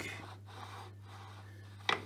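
Tailstock base casting of a Myford Super 7 lathe slid by hand over the blued lathe bed: a faint, even rubbing of metal on metal, with one sharp click near the end. It is the spotting stroke that transfers the blue to show the high spots still to be scraped.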